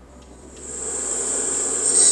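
A recording of a man's snoring played back through a smartphone speaker from a sleep-tracking app. It comes through as a breathy hiss of drawn breath that grows steadily louder.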